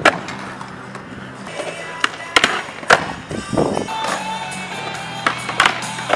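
Skateboard on concrete: wheels rolling, with several sharp wooden clacks of the board popping and landing during backside tailslide attempts on a concrete box. Background music plays throughout.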